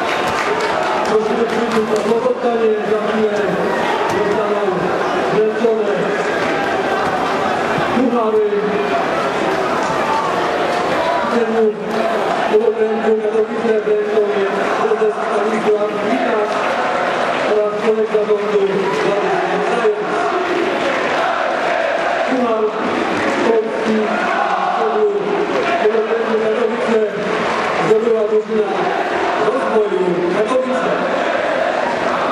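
Football supporters chanting together in the stands: many voices singing long held notes in repeated phrases, over general crowd noise.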